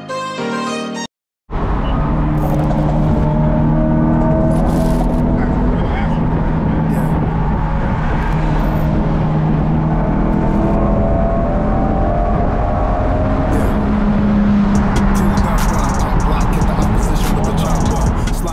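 A car's engine and exhaust running steadily on the move, the engine note slowly climbing and easing back. Violin music ends about a second in, with a brief cut to silence before the engine comes in.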